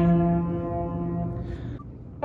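A man's voice holding the last note of a chanted 'Amen', steady in pitch, then fading away about a second and a half in.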